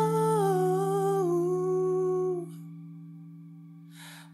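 A male singer holds a long sung note at the end of the word "ako", stepping down a little in pitch, over a sustained backing chord. The voice stops about two and a half seconds in, and the chord rings on, fading.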